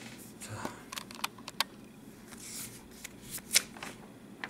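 Notebook pages being flipped and handled: a run of short paper rustles and crisp clicks, the loudest a little past three and a half seconds in.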